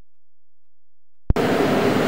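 Dead silence, then a click about a second and a half in as the sound cuts in, followed by a steady mechanical hum with a few held tones.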